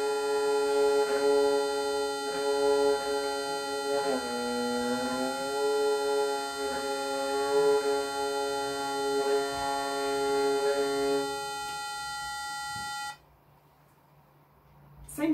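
A treble viol's open string bowed and tuned by turning its peg: the note dips in pitch and comes back up about four to five seconds in, then holds steady until the bowing stops about eleven seconds in. Under it a steady reference tone sounds and cuts off suddenly near the end.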